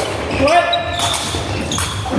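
Sepak takraw ball being played in a large sports hall: a sharp hit about half a second in and another near the end, with a player's short call at the first hit.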